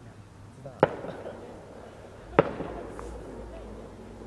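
Two distant fireworks shells bursting, sharp bangs about a second and a half apart, each followed by a short rolling echo. A fainter pop follows near the end.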